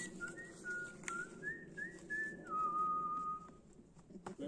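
A person whistling a short tune: about eight quick notes that hop up and down, then one long held lower note near the end.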